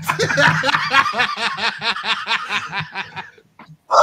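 A man laughing hard, a long run of quick 'ha-ha' pulses, about five a second, that trails off after about three seconds, followed by a short loud burst of voice at the end.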